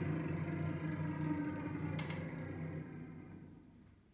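String quartet holding low bowed notes, with the cello's deep tones the strongest, dying away to silence near the end. A faint click about two seconds in.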